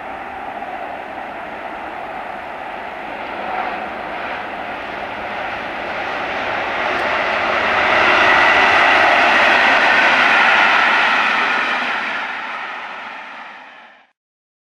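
Electric locomotive hauling a train of vans along the line, its running sound growing louder as it approaches, loudest about eight to eleven seconds in, then fading away.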